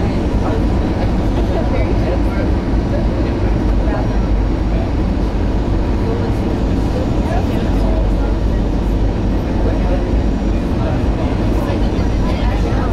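Steady jet engine and airflow noise inside an airliner cabin, heard from a window seat as the plane descends on final approach to landing.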